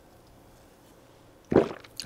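A barely audible sip from a plastic shaker cup of pre-workout drink, then a short voiced sound from the drinker after swallowing, about a second and a half in.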